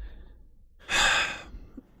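A man sighing: one breathy exhale about a second in, lasting about half a second. There is a brief low thump right at the start.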